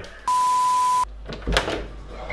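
A single steady 1 kHz censor bleep, lasting just under a second and starting and stopping abruptly; then a short laugh near the end.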